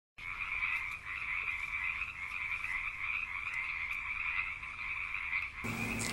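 A dense chorus of many frogs calling together, a steady high-pitched mass of sound that cuts off abruptly near the end.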